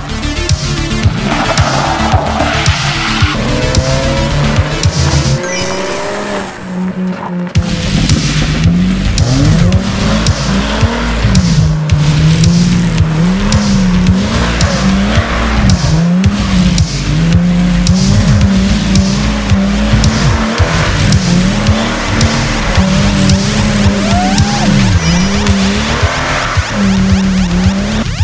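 Music with a steady beat over a Subaru Alcyone SVX's flat-six engine revving up and down again and again and its tyres skidding as the car drifts. The sound dips briefly about six seconds in.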